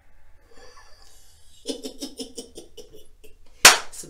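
A woman laughing: a quick run of short, evenly spaced laughing pulses about halfway through. Near the end comes a short, sharp burst of noise, the loudest sound here.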